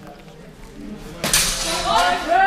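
A sudden sharp crack of swords striking in a fencing exchange, about a second in, followed near the end by a loud shout.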